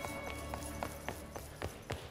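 Film score with sustained tones, under a run of about six sharp, unevenly spaced knocks in quick succession.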